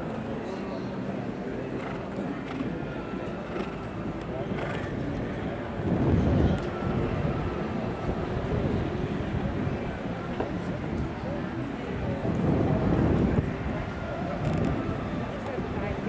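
Indistinct voices over outdoor ambience, with two louder low rushing noises, one about six seconds in and another from about twelve to thirteen and a half seconds.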